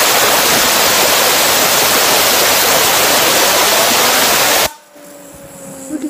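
Compressed air blasting from an air-compressor blow gun onto a fidget spinner in a loud steady hiss, cutting off suddenly about four and a half seconds in. Then the spinner's bearing whirring with a faint tone that slowly falls in pitch as it spins down.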